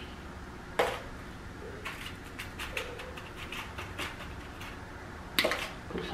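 A spoon tapping and scraping against a bowl while graham cracker crumb crust is spooned into paper cupcake liners: a few light clicks, the sharpest about a second in and near the end.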